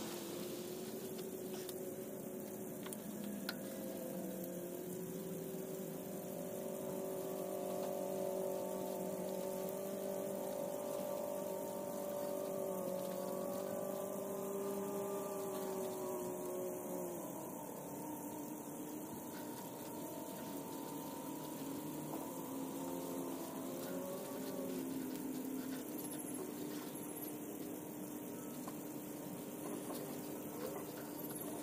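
A steady motor drone whose pitch shifts slowly a few times.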